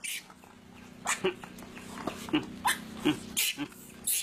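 A monkey giving a run of short, squeaky calls, about six from a second in onward, some of them rising quickly in pitch.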